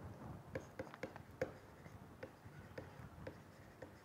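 Faint taps and scratches of a stylus writing by hand on a tablet: about ten short, irregular strokes.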